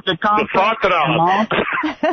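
Speech only: a man talking over a radio broadcast, with no other sound.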